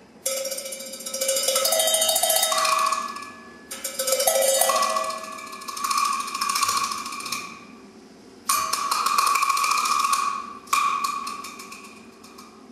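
Solo percussion: four flurries of rapid strokes on ringing metal percussion. Each comes in suddenly, swells and dies away.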